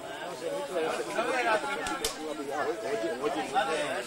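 Casual conversation of several people talking over one another, with a single sharp click about halfway through.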